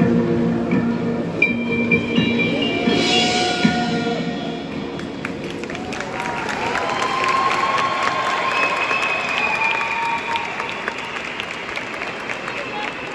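A show band's held final chord on brass and percussion dies away in the first second, and the audience breaks into applause and cheering that lasts the rest of the stretch.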